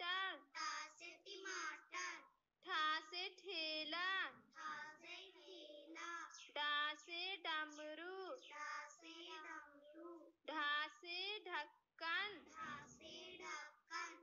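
Young children's voices chanting the Hindi alphabet in a sing-song recitation, each letter followed by its word, in phrases with short pauses.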